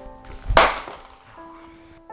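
A single sharp smack about half a second in: a folded paper ddakji tile slammed down onto the other player's tile to flip it. Background music holds long steady notes throughout.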